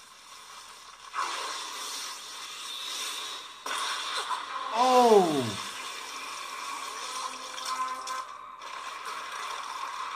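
Sound effects from an anime episode's soundtrack: rustling, scraping noise, with one loud, steeply falling pitched tone about five seconds in.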